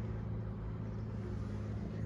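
A steady low mechanical hum with an even, unchanging pitch.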